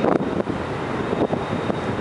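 Wind buffeting the microphone: a steady rush with irregular gusts.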